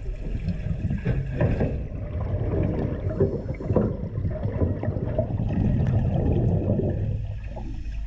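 Underwater ambience: a dense, muffled rumble of moving water and bubbles, with frequent short clicks and knocks.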